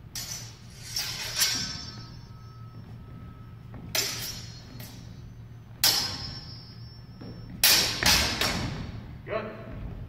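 Longsword blades clashing in quick exchanges: groups of sharp strikes, each followed by a brief metallic ring, the loudest cluster near the end. A steady low hum runs underneath.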